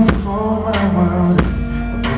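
Live pop song played through a club PA: a drum hit about every 0.7 seconds over a deep held bass and sustained pitched chords.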